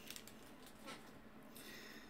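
Near silence, with faint handling of a stack of baseball cards shuffled by hand and a light tick about a second in.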